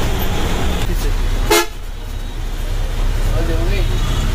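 Steady engine and road noise from a vehicle on the move, broken by a short sharp click about a second and a half in. After it comes busy street traffic noise with a short vehicle horn toot near the end.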